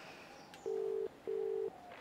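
Telephone ringback tone heard in a mobile phone's earpiece: a double ring of two short, steady, mid-pitched tones with a brief gap between them, the sign that the called phone is ringing.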